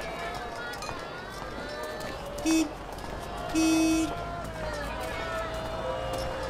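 Two honks of a car horn, a short one and then a longer one about a second later, over street background with distant voices.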